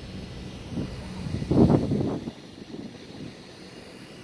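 Boat engine droning steadily. A louder rumbling burst comes about a second and a half in and lasts under a second.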